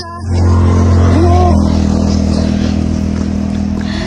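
A motor vehicle's engine running close by: a loud, steady low hum that comes in within the first half second and eases off slightly over the next few seconds.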